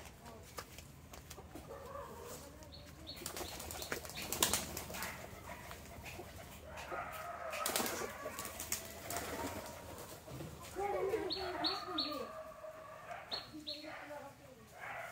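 Pigeons' wings flapping and clapping as they take off from a tree branch, in bursts that are loudest about four seconds in.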